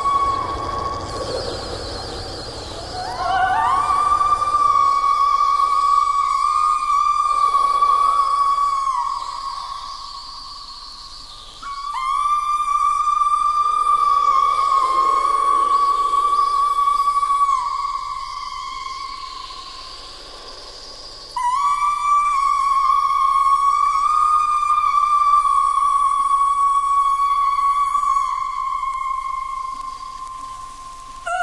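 Avant-garde vocal music: a high soprano voice holds three long, steady high notes, each lasting several seconds. The first slides up into pitch about three seconds in; the later two enter suddenly, about twelve and twenty-one seconds in, and each slowly fades.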